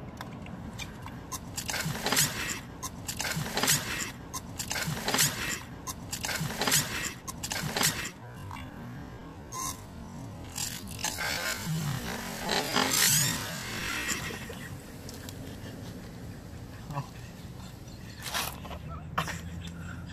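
Air blown through a plastic straw into a can of carbonated soda, bubbling in a quick string of short blows, then a longer bubbling blow partway through and one more short one near the end.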